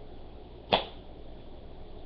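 A single short, sharp swish of a comic book being swung quickly past the microphone, about three-quarters of a second in, over a faint steady hum.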